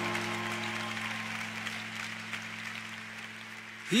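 Audience applause, a steady clapping haze that slowly fades, over a held low chord from the accompaniment. A male voice starts singing right at the end.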